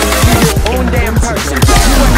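Loud electronic backing music with a fast, heavy drum beat; the high end thins out for about a second in the middle, then the full mix returns.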